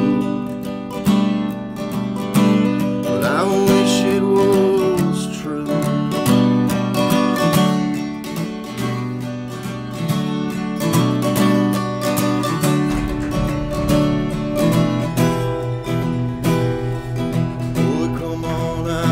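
Acoustic guitar strummed solo in an instrumental passage between the song's verses, full chords in a steady rhythm.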